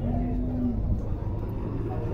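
Outdoor cattle-fair background: a steady low rumble with faint distant voices, and a short steady tone lasting under a second at the start.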